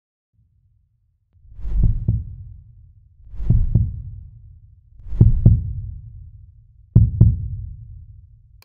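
Heartbeat sound effect under an animated logo intro: a low double thump, four times about a second and three-quarters apart, each pair fading away over a low rumble.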